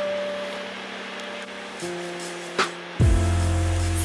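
Background music with soft held notes; a deep bass note comes in about three seconds in.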